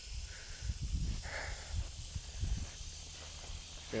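Outdoor field ambience: uneven low wind rumble on the microphone under a steady faint high hiss, with a brief soft rustle just over a second in.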